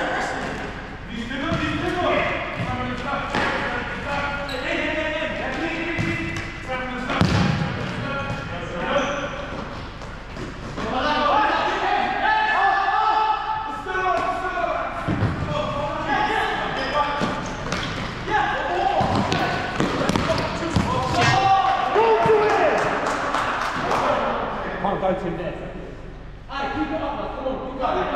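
Futsal ball being kicked and passed on a hard sports-hall floor: several sharp knocks that echo in the large hall, mixed with players' unintelligible shouts and calls throughout.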